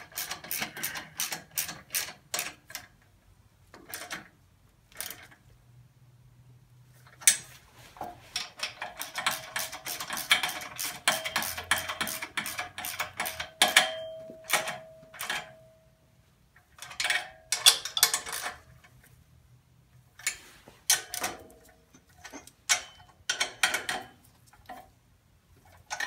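Socket ratchet wrench clicking in quick runs as the muffler flange bolts are tightened down onto the exhaust manifold. A faint metallic ring hangs over the clicking near the middle.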